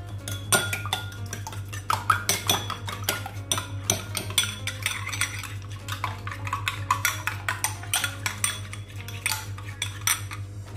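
Metal spoon beating an egg in a small ceramic bowl: rapid, uneven clinks of the spoon against the bowl's sides.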